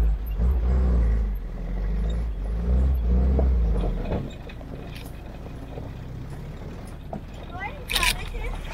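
WWII-style Jeep engine running as the vehicle drives slowly over a rough dirt track, with a heavy low rumble on the microphone for about the first four seconds, then a steadier, quieter running sound.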